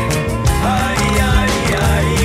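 Studio recording of a flamenco-fusion band playing an instrumental passage: drums keeping a steady beat under bass, guitar and keyboards, with a gliding melodic line above.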